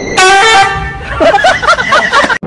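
A loud horn-like honk that starts suddenly and steps down in pitch, followed by a run of short wavering cries that rise and fall.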